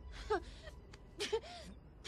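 A young child's voice sobbing: two short bursts of gasping breaths with brief whimpering cries.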